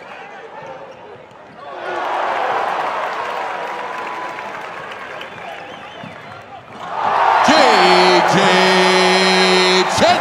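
Live college basketball game sound in an arena: crowd noise and ball bounces on the hardwood court. About seven seconds in it swells into a much louder noise with a held, pitched tone for the last three seconds.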